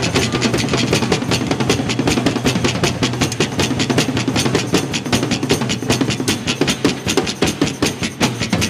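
Live band playing an instrumental passage: strummed acoustic guitars over a drum kit, in a fast, steady rhythm.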